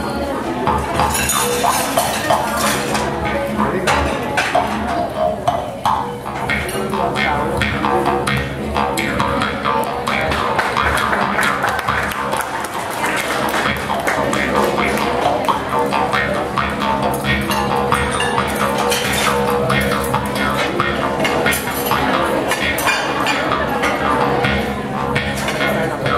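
Kubing, a Philippine bamboo jaw harp, played continuously: a steady low drone with a quick, even run of plucks over it, its overtones shifting like a voice shaping vowels.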